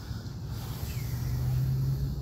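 A steady low drone with a constant hum under it, getting a little louder toward the end.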